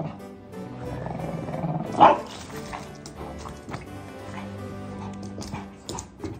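Background music with a Boston terrier giving one short, loud play bark about two seconds in.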